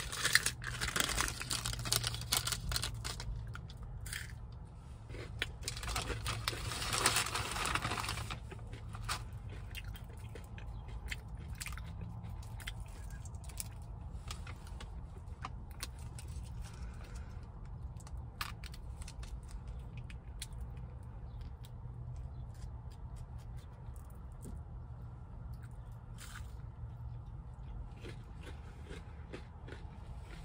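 Biting into and chewing a crispy McDonald's hash brown, with louder crunching and paper-sleeve rustling in the first three seconds and again about six to eight seconds in, then quieter chewing. A steady low hum runs underneath.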